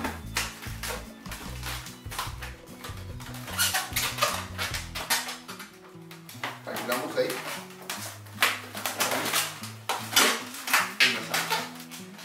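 Latex 260 twisting balloons squeaking and rubbing as they are twisted and handled, in short irregular runs that are busiest from about four seconds in and again near the end, over background music with a bass line.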